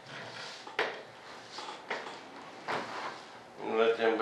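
Soft rustling and a few sharp clicks as a carbon-fibre layup is handled and lifted off its mold on a workbench. A man's voice starts near the end.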